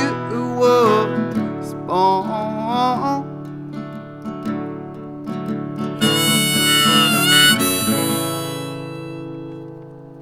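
Harmonica played in a neck rack over a strummed acoustic guitar (The Loar LH-200 small-body flattop), closing the song. About six seconds in, the harmonica holds a long high chord with a waver near the end. Then the guitar's last chord rings on and fades.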